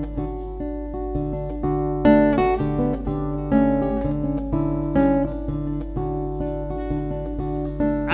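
Acoustic guitar played solo: plucked notes and chords ringing one after another, with a steady low hum underneath.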